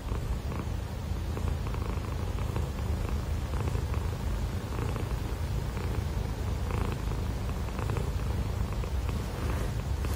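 Domestic cat purring steadily close to the microphone, a continuous low rumble that swells faintly with each breath.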